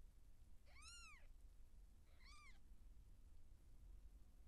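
Two short, high-pitched mews from a newborn Siamese kitten, each rising then falling in pitch, about a second and a half apart, the second one fainter.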